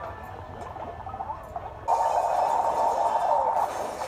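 Soundtrack of a TV episode: faint background sound, then about two seconds in a sudden loud rushing noise that lasts under two seconds and fades.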